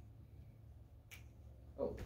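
A single short, sharp click about a second in, over a steady low hum of room noise.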